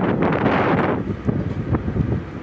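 Wind buffeting a phone microphone: a loud, uneven low rumble, with a brief louder hiss about half a second in.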